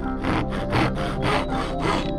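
Small hand saw cutting a thin softwood strip in quick back-and-forth strokes, about three a second, over background music.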